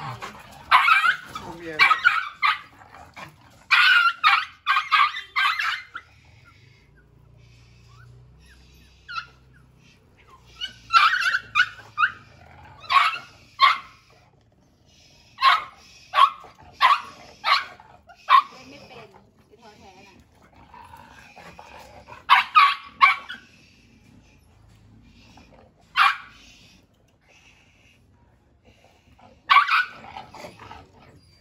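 Small dog barking in sharp, high-pitched yaps, several in quick succession at a time, with short pauses between the runs.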